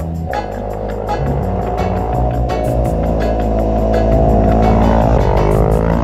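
Motorcycle engine, a single-cylinder Yamaha WR250R, growing louder as the bike approaches at speed and passes, with a pitch swing near the end as it goes by. Background music with a steady beat plays under it.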